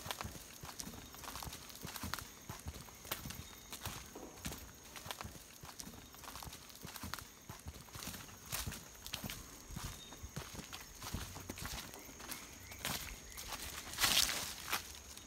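Footsteps of people walking on a dirt forest trail strewn with dry leaves: an irregular run of crunches and light clicks, with a louder crunch near the end.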